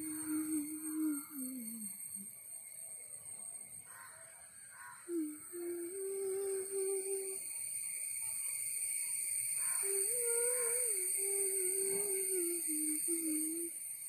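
A person's voice humming in held, wavering notes that step up and down in pitch, in phrases of a second or two with short gaps, over steady high-pitched background tones.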